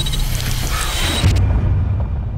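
Horror-trailer sound design: a loud, harsh wash of noise over a deep rumble. About a second and a half in, the high end cuts off abruptly, leaving only the low rumble as the picture goes to a title card.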